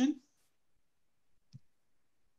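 A man's voice trailing off at the end of a sentence, then near silence with a single faint click about one and a half seconds in.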